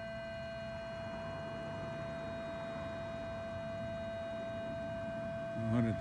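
Minelab Equinox 800 metal detector giving a steady, unchanging mid-pitched tone, over a low rumbling noise.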